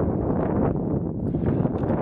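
Wind buffeting the camera microphone: a steady, rough low rumble.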